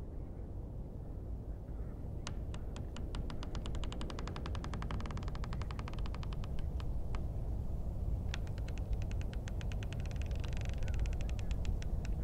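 Two long runs of sharp clicks, each starting slowly, speeding into a fast rattle and slowing again, over a low steady rumble.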